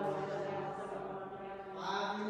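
A single voice chanting liturgically in long, steady held notes, shifting pitch near the end.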